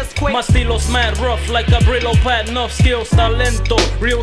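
1990s boom bap hip hop record playing: a drum beat with deep bass hits that drop in pitch, under a looping pitched sample, with a rapped vocal part.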